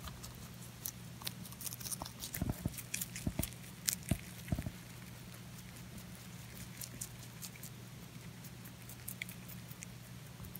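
A rabbit chewing a leafy green vegetable: quick, crisp crunching clicks, densest in the first half and thinning out later as the mouthful is worked down.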